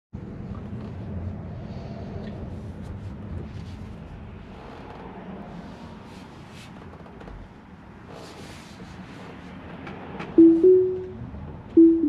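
Tesla cabin with steady low road and tyre noise. About ten seconds in comes a rising two-note chime as Autopilot engages, and just over a second later a falling two-note chime as it disengages.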